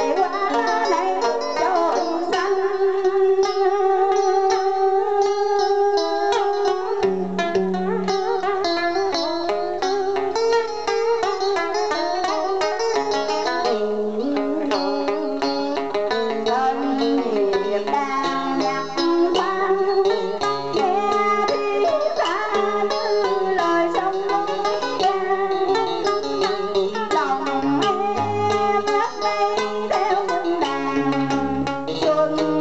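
Live Vietnamese đờn ca tài tử music: plucked string instruments playing a continuous passage of quick, ornamented notes.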